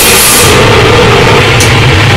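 Harsh noise music: a loud wall of distorted noise. About half a second in, the hiss in the top end drops out, leaving a heavy, distorted low rumble.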